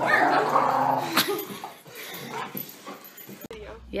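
A dog whimpering and yipping excitedly as it jumps up to greet a person, loudest in the first second, with a woman's voice mixed in. It cuts off abruptly near the end.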